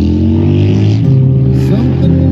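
A motor vehicle's engine accelerating, its pitch rising in the first second and then holding steady, loud enough to cover the acoustic guitar and vocal music beneath it.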